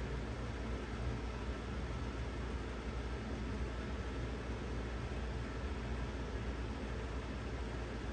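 Steady room background noise, a low hum with hiss above it, unchanging throughout and with no distinct events.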